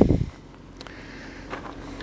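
A brief gust of wind buffeting the microphone right at the start, then outdoor quiet with a faint steady low engine rumble from a distance.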